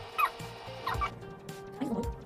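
Light background music with held tones and short falling chirp-like notes, two of them in quick succession.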